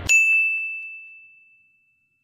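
A single bright bell ding sound effect, struck once, with one high ringing tone fading out over about a second and a half.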